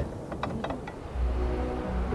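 Faint irregular clicking of a windmill cap's hand-cranked winding gear. About a second in, background music comes in with a low drone and held notes.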